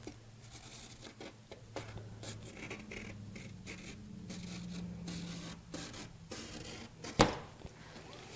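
Pencil scratching over a rigid painted panel as a line is drawn through wet oil and cold wax paint, in short irregular strokes. A single sharp knock about seven seconds in.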